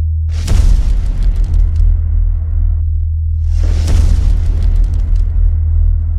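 Cinematic intro sound design: a steady deep rumbling drone with two booming hits a little over three seconds apart. Each hit swells into a long noisy wash that dies away.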